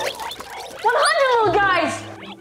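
A loud, high-pitched wavering cry that starts about a second in and slides up and down in pitch.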